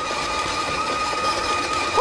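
Electric shaved-ice machine running, its blade shaving a block of ice into fine powdery flakes: a steady motor whine over an even hiss.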